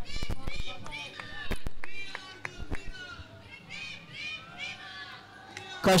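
Cricket players on the field shouting short, high-pitched calls. A few sharp knocks come in the first second and a half.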